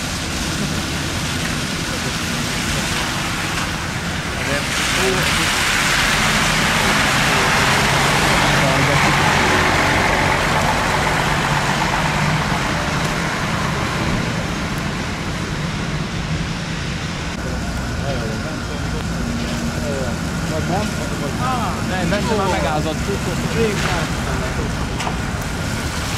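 City buses in traffic on a wet road: a steady low engine hum, with tyre hiss on wet asphalt that swells as a bus passes about five to twelve seconds in.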